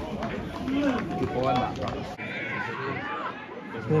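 Men's voices shouting and calling to one another across a football pitch during open play, with a short held call a little past halfway.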